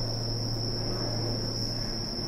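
Crickets singing in one steady, unbroken high-pitched trill.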